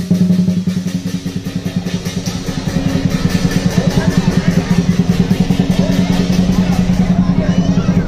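Lion dance drum beaten in a fast, even roll of about eight strokes a second, with cymbals clashing along; the roll grows louder a couple of seconds in.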